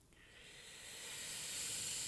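A long, steady, hissing breath drawn close to the microphone, growing gradually louder and cutting off just before speech resumes.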